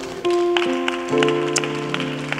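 Soft worship music: held keyboard chords that change to new chords several times, with a few light ticks.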